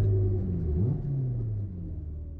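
Honda S2000's stroked F20C four-cylinder engine running at low revs, heard inside the cabin as the car slows; its pitch dips and swings back up about a second in, then the sound fades toward the end.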